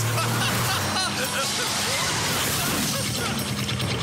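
Cartoon car sound effect: a car driving fast around a bend, a noisy rush of engine and tyres, over background chase music.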